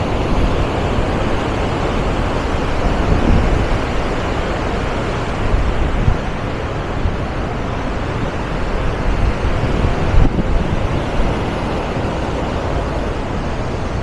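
Muddy river water rushing through open concrete dam spillway gates: a loud, steady roar of churning water, with some wind buffeting the microphone.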